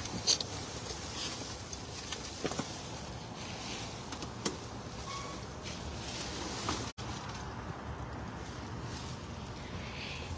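Steady hum of a running trash shredding machine, with a few faint rustles of plastic garbage bags; the sound cuts out for an instant about seven seconds in.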